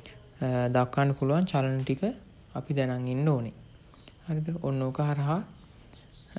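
A man's voice speaking in short phrases with brief pauses, lecturing, over a faint steady high-pitched tone in the background.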